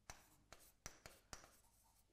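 Faint pen-on-screen writing: a pen tapping and stroking on a digital writing screen, making about five soft ticks spaced a third to half a second apart.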